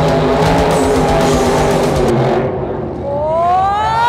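Loud rock music for the first two seconds or so, then it cuts away to an off-road buggy's engine revving, its pitch climbing steadily from about three seconds in as the buggy drifts on the dirt.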